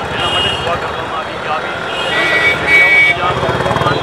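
A man speaking continuously into press microphones, with outdoor street noise behind.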